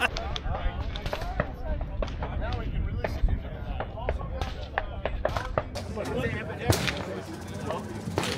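Scattered gunshots at an outdoor shooting range, sharp pops a second or so apart, over a steady low wind rumble on the microphone and faint background voices.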